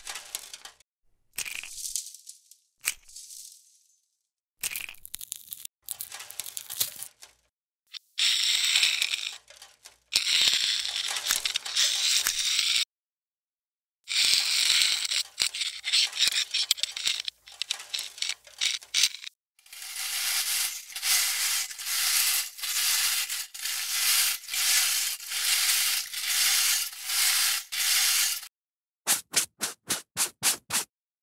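A metal scraper scraping and chipping flakes of rust off an old iron padlock: short separate scrapes at first, then longer stretches of scraping, then a steady series of strokes about one a second.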